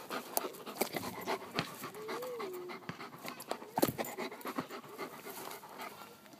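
German Shepherd panting close to the microphone, with scattered sharp clicks and scuffs throughout.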